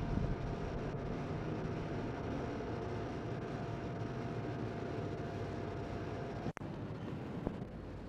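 Outdoor street ambience: a steady wash of traffic noise with a faint steady hum, broken by a brief dropout about six and a half seconds in.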